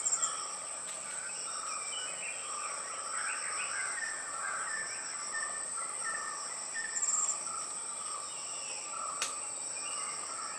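Forest ambience: a steady high insect whine with short pulsed trills at the start and again about seven seconds in, and scattered bird calls. There is one sharp click near the end.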